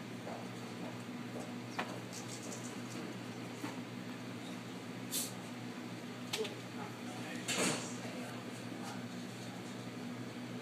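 A steady low hum in a quiet room, with a few faint clicks and short rustles. The loudest rustle comes about three-quarters of the way through.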